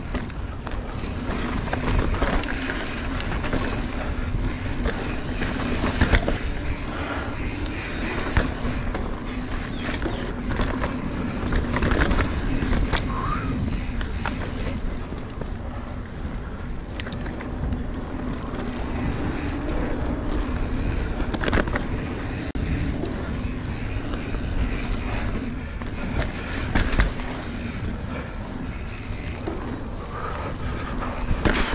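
Mountain bike rolling along a dirt singletrack: a steady noise of knobby tyres on packed dirt, with frequent short clicks and knocks from the bike as it rides over bumps.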